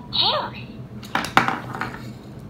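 A short rising-and-falling voice sound at the start, then hard plastic toy pieces clattering and clicking against each other and the wooden table for under a second, about a second in.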